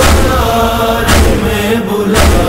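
Noha backing of chanting voices holding a tone over a deep, sharp thump about once a second, the chest-beating (matam) beat that keeps time in a noha.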